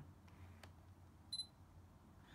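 Near silence with a couple of faint clicks, then one short high beep about 1.3 s in: a Sony A7R II's focus-confirmation beep, signalling that autofocus has locked.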